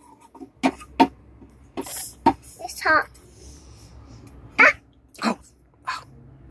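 Short, separate murmurs and vocal sounds from a small child, with a few light clinks from a toy stainless-steel pot.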